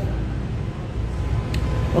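Steady low background rumble with a faint steady hum, and one light click about one and a half seconds in as a circuit board is handled.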